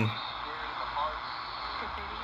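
Degen DE1103 portable shortwave receiver tuned to an AM station on 12050 kHz, playing faint, broken speech under a steady hiss of static.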